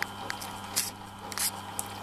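Mini drill-mill's 550 W motor running with the spindle turning, a steady hum, with two brief clicks near the middle.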